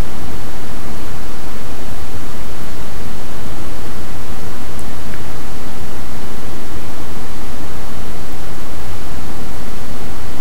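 Loud, steady hiss of recording noise with a low rumble beneath it, unchanging throughout, with nothing else standing out.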